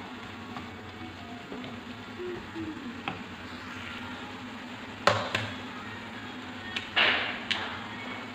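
Chicken filling frying in a pan with a steady sizzle, and a wooden spatula knocking against the pan a few times, sharpest about five seconds in. Near the end there is a brief louder hiss with a few more knocks.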